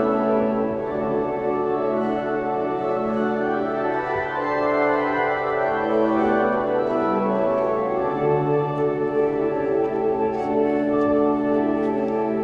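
Church pipe organ playing a slow piece in sustained chords, with notes held and changing every second or two.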